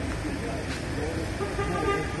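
Outdoor street noise: a steady traffic rumble with people talking.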